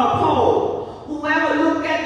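Speech only: a woman speaking into a handheld microphone.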